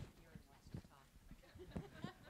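Quiet chuckling and low murmured voices, with a few soft thumps, loudest near the end.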